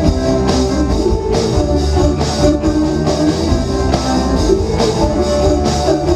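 A live indie rock band playing: electric guitars, electric bass, keyboard and drum kit together at full volume.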